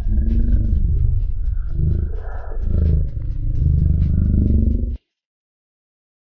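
A boat's engine running with a low rumble and a wavering pitch, with wind buffeting the microphone. It cuts off suddenly about five seconds in.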